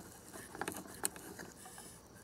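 Small plastic spoon scraping and tapping against a toy plastic rice-cooker bowl while scooping crumbly Konapun toy 'rice': a run of light, scratchy clicks, the sharpest about a second in.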